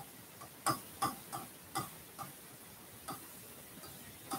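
Pen tip tapping and clicking on the glass of an interactive touchscreen board during handwriting: a faint series of light, irregularly spaced clicks, the sharpest about two-thirds of a second in.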